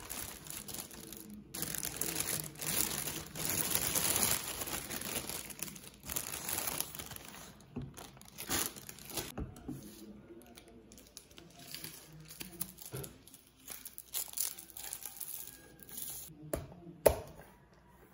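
Thin plastic carry bag crinkling and rustling as a cup is pulled out of it, loudest in the first several seconds, then lighter scattered rustles. Near the end, one sharp pop as a straw punches through the cup's sealed plastic film lid.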